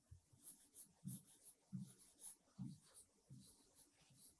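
Faint taps and scratches of a pen stylus writing on an interactive whiteboard screen, in a string of short strokes.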